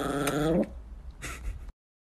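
A woman's drawn-out, whining groan of protest, one steady held note that stops about half a second in, followed by a fainter, brief sound.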